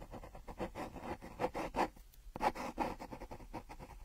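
Pencil scratching quickly across paper in rapid, uneven strokes, a sketching sound effect, with a short pause about halfway through.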